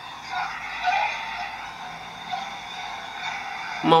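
Muffled shouting and screaming mixed with noise, coming through a phone's loudspeaker during a call.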